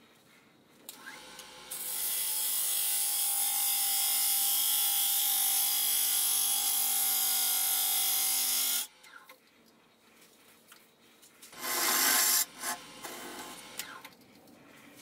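Wood lathe running while a long-handled gouge cuts the spinning oak hollow form: a loud, steady hiss of shavings over the motor's hum for about seven seconds, stopping abruptly. A shorter burst of cutting or rubbing on the wood follows a few seconds later.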